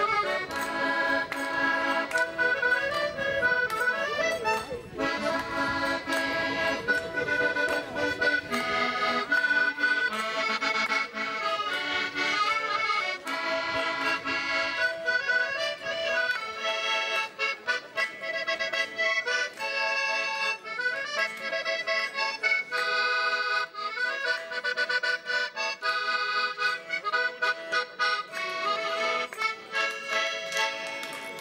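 Accordion playing a folk dance tune, a continuous melody over a steady rhythm.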